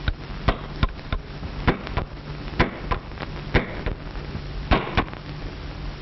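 A tool striking metal in about ten sharp, irregular knocks as handcuffs are being cut off a man's wrists. A steady low hum from the old film soundtrack runs underneath.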